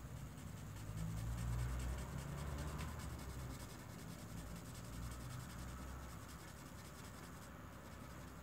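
Felt tip of an alcohol marker rubbing faintly on paper as an area of a colouring page is filled in.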